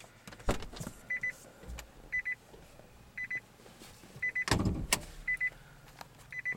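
Nissan Leaf's in-cabin warning chime: a short burst of quick, high beeps repeating about once a second. A few clicks come early, and louder knocks and handling sounds come a little past halfway.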